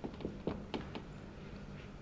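Marker pen writing on a whiteboard: a few quick taps and squeaks of the tip in the first second, over a steady low hum.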